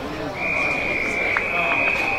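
Football umpire's whistle: one long, steady blast starting about a third of a second in, over faint crowd chatter.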